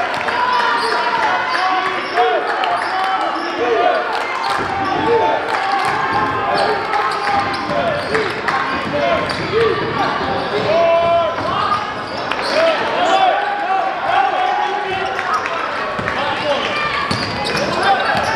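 A basketball being dribbled on a hardwood gym floor during a game, with crowd and player voices echoing in the hall and short sharp knocks scattered throughout.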